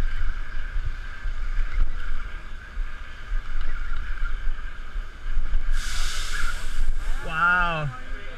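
Fishing reel being cranked on a boat at sea, under a steady low rumble of wind and water on the microphone. A brief rushing hiss comes about six seconds in, and a short voice call near the end.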